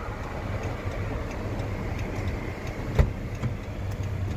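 The Chrysler 300's 3.6-litre V6 idling with a steady low rumble heard from inside the cabin. A single sharp click comes about three seconds in.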